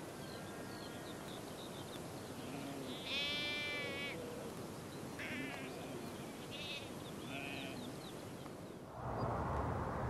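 Sheep bleating on the steppe: a few wavering calls, the longest and loudest about three seconds in, then several shorter ones, over a steady open-air background.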